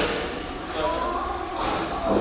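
Overlapping background voices of several people in a large tiled room, with one sharp knock right at the start.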